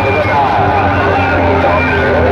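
Loud amplified audio blaring from a stack of horn loudspeakers: a voice over a steady low bass.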